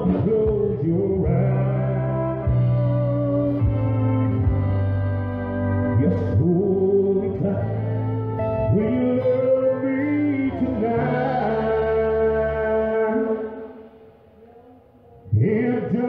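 A country song with a man singing over guitar accompaniment. The music drops away for about a second and a half near the end, then the singing comes back in.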